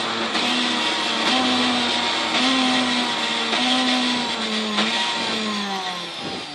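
Rear-wheel-drive Ford Fiesta rally car's engine heard from inside the cabin, running hard at fairly steady high revs with small dips in pitch, then sinking in pitch near the end as the car slows. Loud road and cabin noise throughout.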